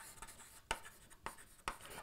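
Chalk writing on a blackboard: faint scratching with a few sharp taps as the letters go down.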